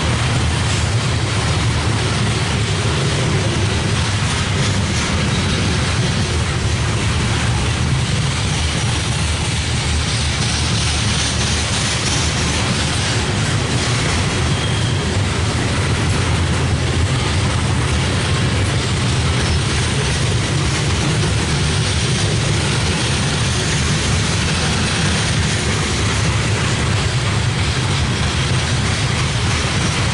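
Loaded coal hopper cars of a freight train rolling past: a steady low rumble of steel wheels on the rails, unbroken throughout.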